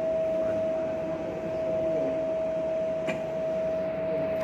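A steady mid-pitched hum over room noise, with one faint click about three seconds in. No gunshot is heard.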